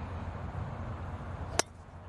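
A golf driver striking a ball off the tee: one sharp crack about one and a half seconds in, over a steady low background hum.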